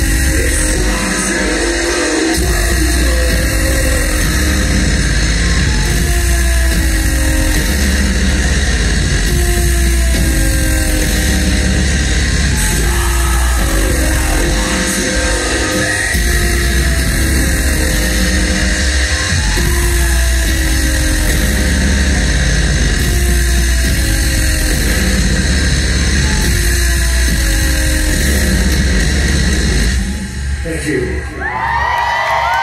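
Loud live industrial metal from a band: heavy distorted bass and electronic drone, with a slow pulse repeating about every three seconds.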